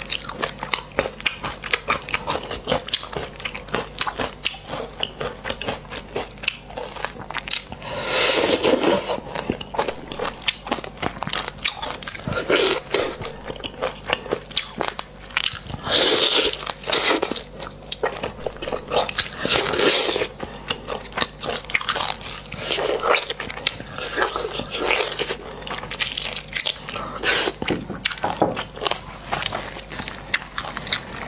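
Close-miked ASMR eating of spicy braised beef marrow bones: steady wet chewing and biting with many small smacking clicks, and a louder noisy burst every few seconds.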